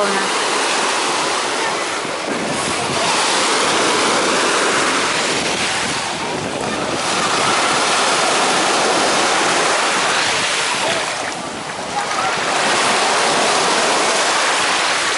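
Sea surf breaking and foaming up the shore at the water's edge. The wash swells and eases every four to five seconds.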